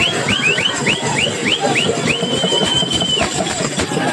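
A whistle blown in quick short rising chirps, about four or five a second, then held in one long steady blast for about a second, before the chirps resume near the end. Drum beats and crowd noise run underneath.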